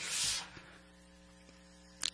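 A short breathy exhale close to the microphone, then a faint steady electrical mains hum from the microphone and sound system.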